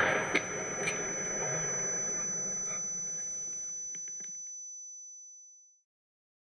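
Tail of an RPG-7 launcher blowing up: rushing, crackling noise with a few sharp cracks, and a steady high-pitched ringing tone over it, all fading out to silence over about five seconds.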